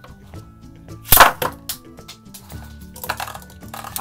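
Beyblade Burst spinning tops in a plastic stadium: one sharp, loud clack as they clash about a second in, then a growing rattling whir as they spin and scrape against each other and the stadium. The clash is when the chip comes off the Strike Valkyrie top.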